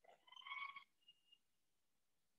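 Faint, brief squeak of a marker pen on a whiteboard about half a second in, followed by a shorter, thinner squeak.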